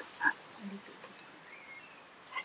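A cat gives one short, faint call just after the start.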